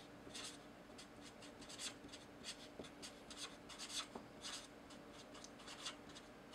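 Felt-tip marker writing on paper: faint, quick scratchy strokes in short irregular runs as letters and symbols are written out.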